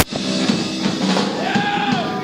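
Live pop-punk band playing loudly, with several voices singing together into microphones and a held sung note near the end. A sharp click at the very start, where the recording is cut.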